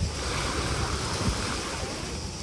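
Small waves lapping and washing onto a sandy shore as a steady hiss, with wind buffeting the microphone as a low rumble.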